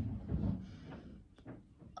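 Quiet handling of a small metal herb grinder as its lid is pulled apart. A short sniff follows, then a single light click about a second and a half in.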